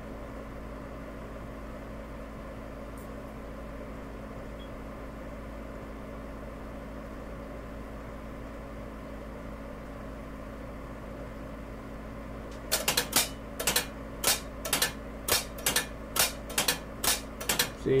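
Corsa marine exhaust diverter valves being cycled on the bench by their solenoids: a run of sharp clicks and clacks, about two a second and some in quick pairs, starting about two-thirds of the way in over a steady low hum. The starboard valve is significantly slower than the port one, a lag the owner puts down to its solenoid or the valve itself.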